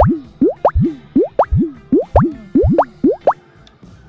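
A rapid series of cartoon-style rising "bloop" sound effects, about a dozen in just over three seconds, each sweeping quickly up in pitch, over background music.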